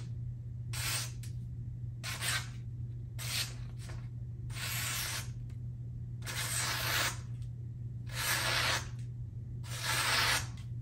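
A freshly sharpened Benchmade Bugout's S30V blade slicing down through a sheet of paper, about eight short hissing strokes roughly a second apart, over a steady low hum. The edge passes through with zero resistance: a paper-cutting sharpness test.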